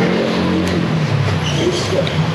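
Street traffic: a car engine running close by over a steady traffic hum.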